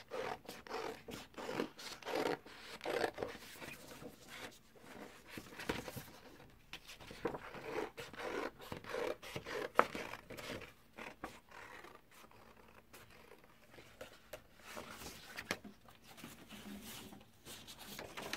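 Scissors snipping through purple construction paper in many short, irregular cuts as a circle is cut out, with the paper sheet rustling as it is turned. The cuts thin out for a couple of seconds after the middle.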